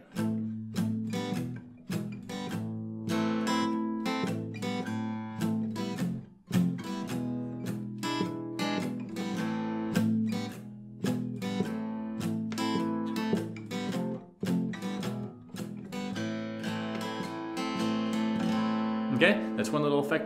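Acoustic guitar strummed in a steady rhythm with the palm resting lightly on the strings at the bridge saddle. The palm-muted chords of an A-minor progression have a muffled tone.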